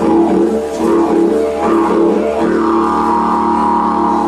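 Wooden didgeridoo played in one continuous drone, its overtones shifting as the player shapes the sound; a brighter high overtone comes in over the drone in the second half.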